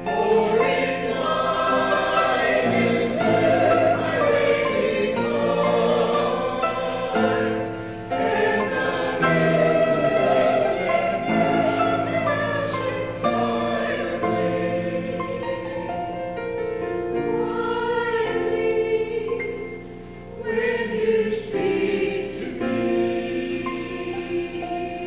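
A mixed church choir of men's and women's voices singing, with a short break between phrases about twenty seconds in.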